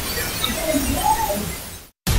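Playback from a handheld digital voice recorder: a steady hiss with a few faint wavering tones around the middle, fading out and cutting off just before the end.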